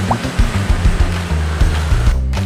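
Background music with a steady bass line and beat, layered with a loud rushing noise that cuts off sharply at the end.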